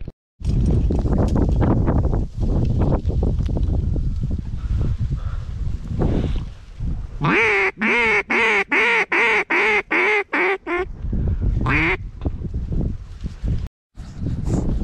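A loud low rumble for the first several seconds, then a quick run of about ten loud quacks, roughly three a second, and one more quack about a second later.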